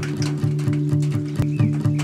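Acoustic guitar song intro: the guitar holds low repeated notes, with a quick, even clicking percussion about four to five times a second running through it.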